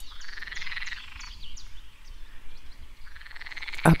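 Animal calls: a rapid, finely pulsed buzzing trill with short high chirps repeating over it several times a second.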